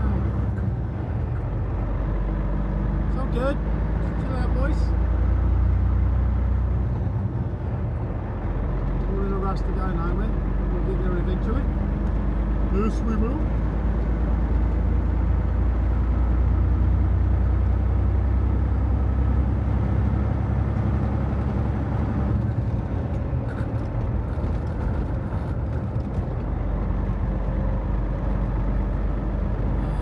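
Inside a semi-truck cab while driving: the diesel engine's steady low drone with road noise.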